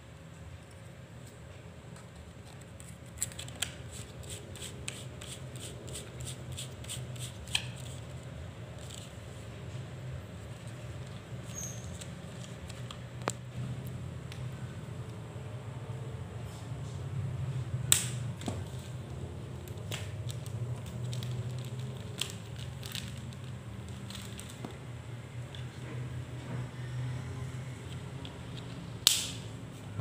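Hands assembling a plastic handheld microphone: small clicks and taps as parts are fitted, with a run of quick ticking clicks from about three to eight seconds in and a few sharp knocks, the loudest near the end, over a steady low hum.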